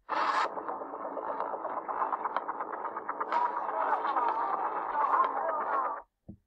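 Soundtrack of a bet365 video advertisement, a dense, muffled mix that starts abruptly with a brief brighter burst and cuts off abruptly as the ad ends.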